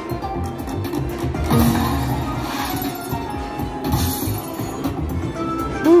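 Prosperity Link slot machine playing its hold-and-spin bonus music and jingles while a spin runs and a coin lands, over casino background noise.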